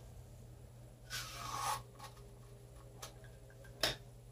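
Baked pastry cigar shells being twisted and slid off stainless-steel tube molds by hand: a brief rasping rub about a second in, a faint click later, and a sharper click just before the end.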